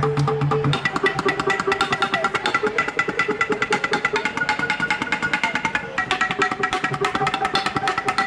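Wooden baseball bats mounted as a xylophone, struck rapidly with two mallets: a fast run of wooden knocks, many strikes a second, each with a short pitched ring. A low steady tone under the strikes stops about a second in.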